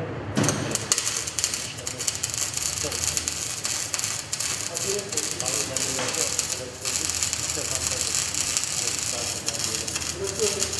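MIG (gas-shielded wire-feed) welding arc crackling and sputtering steadily as a bead is laid, starting about half a second in, with a brief break near seven seconds before the arc is struck again.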